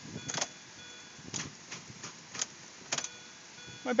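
A few separate clicks, about one a second, from a Mini Cooper whose battery is dead: the key is tried and the car only clicks, with no engine cranking. Faint high electronic tones come and go behind the clicks.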